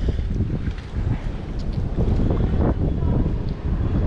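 Wind buffeting the microphone: a low, fluctuating rumble, with a few faint clicks.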